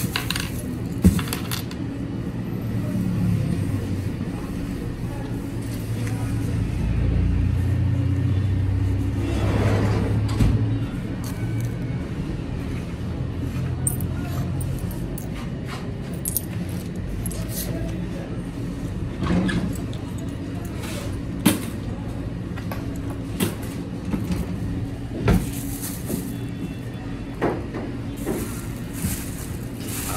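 Shop ambience: a steady low hum, with scattered sharp clicks and knocks from handling and walking, and a louder rumble for a few seconds in the middle.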